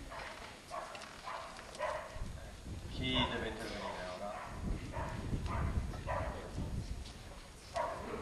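Indistinct talking, quieter than the speeches around it, with one louder voiced sound about three seconds in and a low rumble in places.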